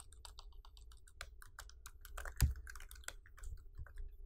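Computer keyboard typing: a quick, uneven run of key clicks, with one heavier knock about halfway through.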